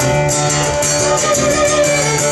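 Fiddle and acoustic guitar playing together live, the fiddle holding long notes over a steady guitar strum.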